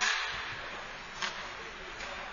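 Ice hockey play on the rink: a hissing scrape of skates on the ice at the start that fades, and one sharp crack a little over a second in.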